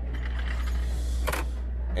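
A single metallic click from the open toolbox drawer of air tools about a second and a half in, over a steady low hum.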